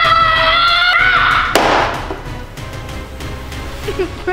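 A child's long held yell, a battle cry, over background music, cut off about a second and a half in by a short crash; the music then carries on more quietly.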